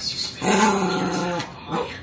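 Small dog vocalizing while begging for food: one drawn-out whining call lasting about a second, starting about half a second in, then a short rising yelp near the end.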